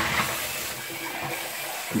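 A steady, even rushing noise.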